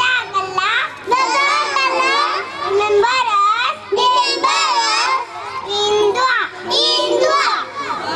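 A group of young children's high-pitched voices together in chorus, line after line with short breaks between.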